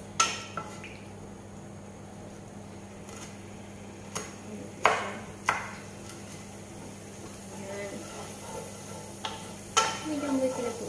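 Wooden spatula stirring sliced garlic in oil in a non-stick frying pan, with a few sharp knocks of the spatula against the pan: one near the start, a cluster around the middle and one near the end. The oil is not yet hot.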